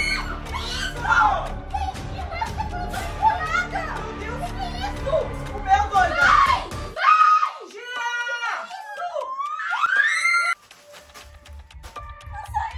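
Several people screaming and shrieking in alarm over background music. About seven seconds in the music bed cuts out, and a single high, sliding voice carries on.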